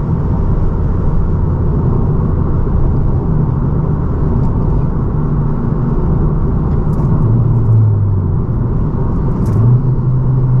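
Cabin noise of a 10th-generation Honda Civic Si cruising at highway speed: a steady rumble of road and wind noise under a low engine drone that wavers slightly.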